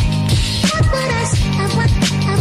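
Background music with a steady beat, about four beats a second, under a sustained bass line and a melody.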